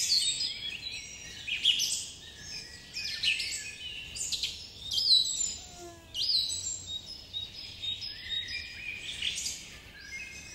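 Several birds chirping and singing, a dense run of short high calls and quick downward-sweeping notes.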